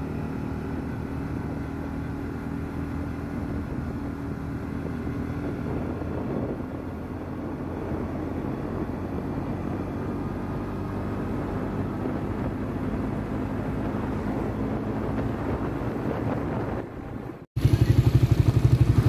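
Engine and road noise from a moving motor vehicle cruising at a steady pace, the engine holding an even pitch. The sound cuts off suddenly near the end.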